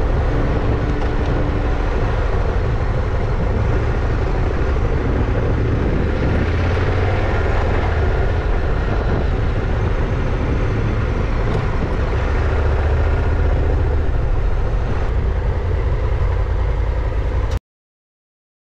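Motorcycle being ridden along a road: steady engine and wind noise, cutting off suddenly near the end.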